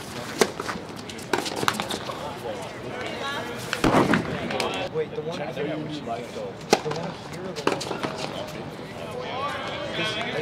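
Tennis racquets striking a tennis ball during a doubles rally: a string of sharp hits, irregularly spaced, the loudest about four seconds in, with men's voices calling out between shots.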